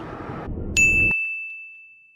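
A single bright bell-like ding strikes just under a second in and rings on one high tone, fading slowly over about two seconds. Before it, the steady rumble of road noise inside a moving car cuts off abruptly.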